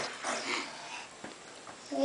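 Soft baby vocal sounds, small coos and breathy babble, in the first half second, then dying down to quiet bath-time sounds.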